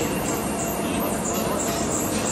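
Steady mechanical din of a large old lathe turning a long steel shaft, a dense rattling noise that holds an even level throughout.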